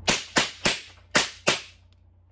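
An airsoft Glock 17 Gen 4 gas-blowback pistol running on a green gas magazine fires five sharp cracks in quick succession: three, then a brief pause, then two more.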